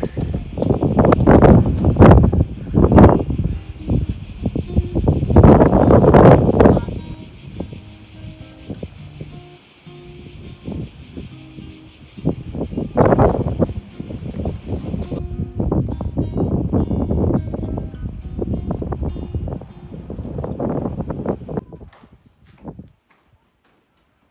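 Wind buffeting the microphone in loud, irregular gusts over the steady high drone of a cicada chorus. The drone thins out about fifteen seconds in and stops near the end.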